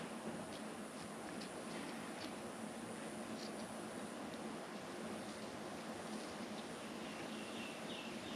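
Faint snips and clicks of small scissors cutting the centre out of a new gasket, a few scattered strokes over a steady background hiss.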